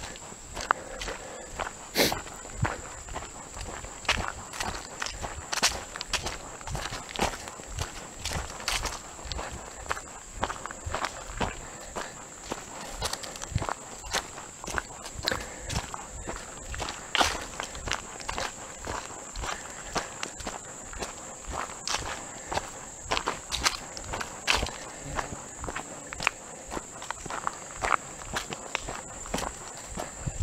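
Footsteps of a person walking at a steady pace on a dirt and grass forest track, about two steps a second, over a steady high-pitched drone.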